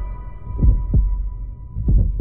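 Heartbeat sound effect on a film soundtrack: two low doubled thumps (lub-dub), about a second and a quarter apart, over a faint held tone that fades out.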